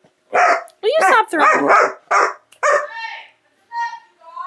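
Dogs barking in a quick run of short, loud barks, followed near the end by a thin, high whine.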